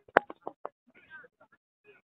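Brief, broken voice calls from people at a soccer pitch, one of them high and wavering, with a single sharp knock like a clap or a kicked ball about a fifth of a second in.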